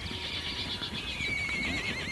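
Horses whinnying: a long, wavering neigh that trembles up and down in pitch, over the hoofbeats of a galloping herd.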